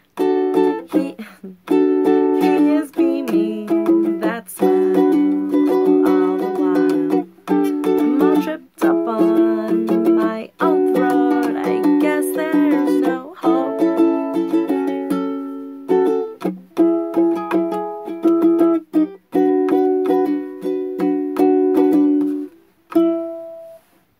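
Ukulele strummed in a steady run of chords, with a woman's voice singing along. The strumming stops near the end after one last short ringing note.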